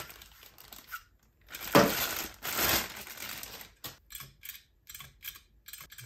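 A plastic packing bag crinkles and rustles as a lock's door handle is pulled out of it, loudest about two seconds in. It is followed by a run of small light clicks and taps as the handle is handled.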